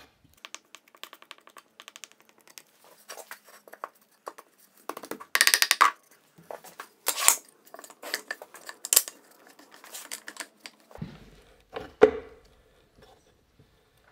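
Handling noises of wooden boards and bar clamps on a workbench: a run of small clicks and scrapes, then louder knocks and clatter as the epoxy-coated boards are set into the clamps, with a sharp knock near the end.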